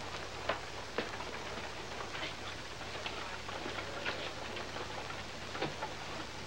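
Steady hiss with irregular clicks and a few sharper knocks, two of them half a second apart near the start, over a low steady hum.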